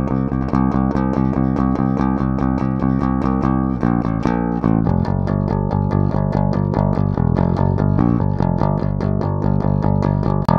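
Electric bass guitar played on its own, a driving run of quickly repeated picked notes in a steady rock rhythm. The pattern breaks briefly about four seconds in and moves to a different set of notes.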